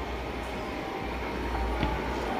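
A steady low rumble under a faint even hiss, with no distinct knocks or clicks.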